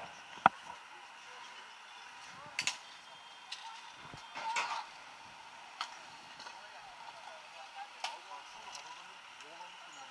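Faint, indistinct voices of bystanders over a steady hum of street traffic, broken by several short sharp clicks and knocks, the loudest about half a second in.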